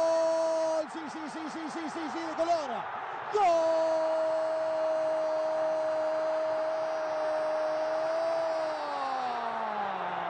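Football commentator's drawn-out Spanish goal cry, "gol": a long held note that about a second in breaks into a rapid warbling run of about four or five pulses a second. From about three and a half seconds a second long held note follows, sliding down in pitch near the end.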